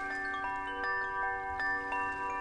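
Wind chimes ringing: clear single notes struck one after another every few tenths of a second, each ringing on so that many overlap.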